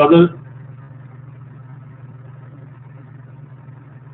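A steady low hum sits under a pause in the speech, even and unchanging throughout. A man's voice speaks one short word at the very start.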